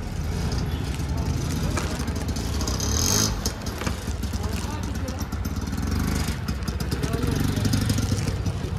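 Auto rickshaw's small engine idling steadily with a low rumble, with a brief burst of noise about three seconds in.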